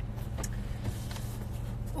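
Steady low hum of a car's running engine heard inside the cabin, with a couple of faint clicks about half a second and a second in.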